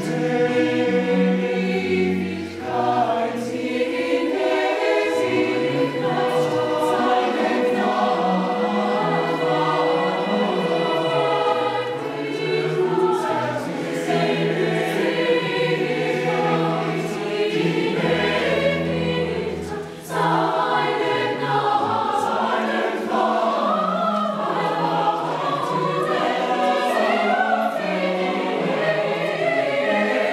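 A mixed youth choir singing in parts, accompanied by a Roland FP-7 digital piano and a cello. The singing pauses very briefly about two-thirds of the way through, then carries on.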